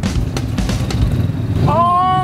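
A motorbike passing close by, its small engine running under background music. A drawn-out 'ooh' of a person tasting food rises near the end.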